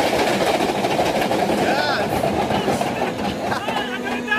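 Steel Dragon roller coaster train rumbling and clattering on its steel track as it slows toward the end of the ride, with riders shouting and laughing over it near the end.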